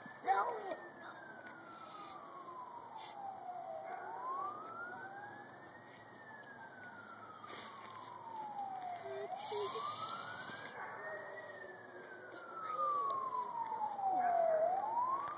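Emergency vehicle siren sounding a slow wail: the pitch climbs quickly and sinks slowly, about three cycles of some five seconds each. A brief thump comes just after the start.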